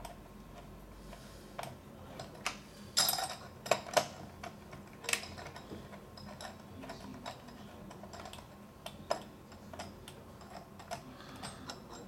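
Small scattered clicks and ticks of a screwdriver and metal fittings as the screws of a lever-handle rose are driven into the blind nuts of a stainless steel glass patch lock, with a few sharper clicks about three to five seconds in.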